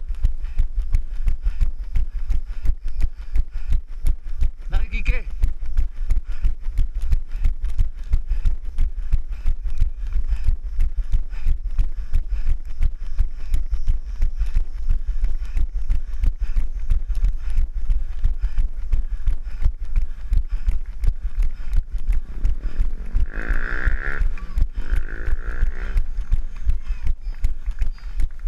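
A runner's footfalls on asphalt, a steady rhythm of about three steps a second, each jolting the body-worn camera. Near the end a voice calls out briefly.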